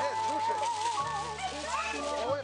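Background music: a long held melody note with a wavering vibrato over steady bass notes that shift about a second in, with voices talking faintly underneath.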